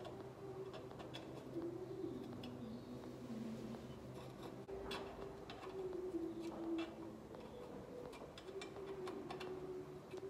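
Scattered metallic clicks of a spanner working the clutch linkage adjuster nut as it is tightened, over a faint, slowly wavering low tone.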